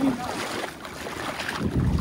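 Wind buffeting the phone's microphone outdoors by the sea, a steady rushing hiss with a stronger low gust near the end.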